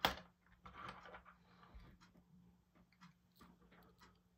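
A sharp click right at the start, then scattered faint small clicks and rustles as small metal spoon lures are picked out and handled.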